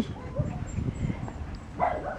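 A dog making short, soft vocal sounds close by, with one louder, short sound just before the end.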